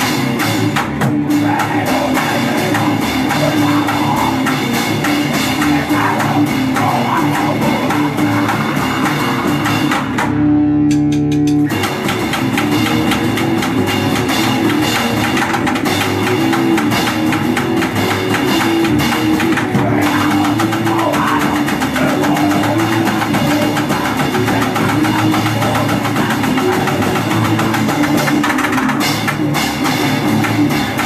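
Grind/crust band playing live in a small room: distorted electric guitar and bass over a drum kit with constant cymbals. About ten seconds in the drums drop out for a second or so while a held chord rings, then the full band comes back in.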